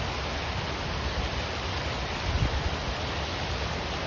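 Steady rushing noise with an uneven low rumble: wind buffeting the microphone outdoors.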